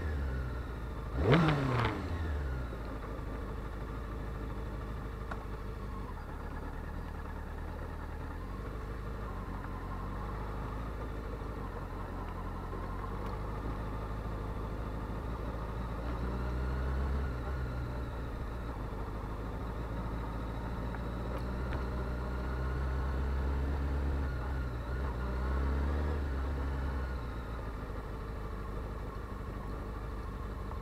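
Honda CBR600 F4i's inline-four engine given one quick throttle blip about a second in, the revs falling straight back. It then runs at low revs near idle, with a few gentle rises in engine speed later on.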